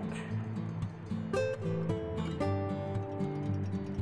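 Soft background music: a few single plucked notes over a steady low tone, the last note held longer.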